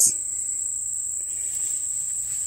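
Insects trilling in a continuous, steady, high-pitched chorus.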